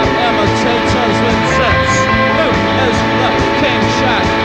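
Post-punk rock band playing live, an instrumental passage with no vocals: guitar notes that slide and bend over held steady tones, with drums and cymbals keeping a regular beat.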